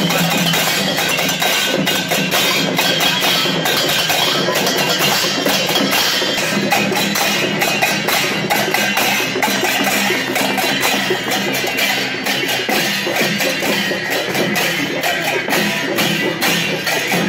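Newar dhime drums and hand cymbals played together in procession, a loud, dense and continuous clashing beat.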